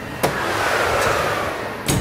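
Kitchen oven opened to load trays: a click, then a steady rush of oven fan noise with a slowly falling whine, and a second click near the end.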